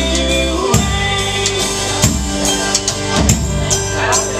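Live band playing an instrumental passage of a waltz: a drum kit keeps a steady beat under sustained violin, guitar, bass and keyboard.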